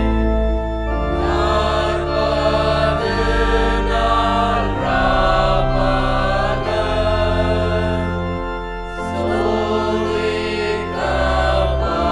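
A congregation singing a slow Tamil hymn in held notes over sustained accompanying chords, with the bass note changing every second or two.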